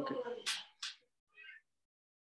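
A man's voice saying 'okay', then a short faint high-pitched call about a second and a half in.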